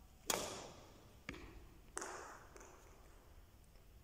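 Badminton racket striking a shuttlecock about a quarter second in: a sharp crack that echoes round the hall. Two fainter taps follow, about one and one and a half seconds later.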